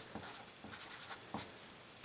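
A felt-tip marker writing on paper in a quick run of short, faint strokes as a small subscript label is written.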